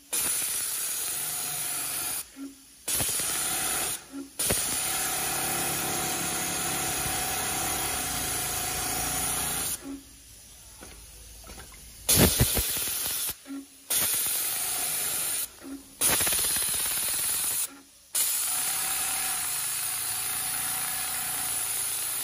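Richpeace semi-automatic tape binding sewing machine running at speed, sewing binding tape onto the edge of a quilted pad. It runs in steady stretches and stops and restarts about six times, with a longer quiet pause about ten seconds in and a louder burst as it starts again.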